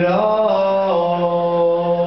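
Male voice holding one long wordless sung note over an acoustic guitar. The note slides up at the start and steps down slightly about a second in.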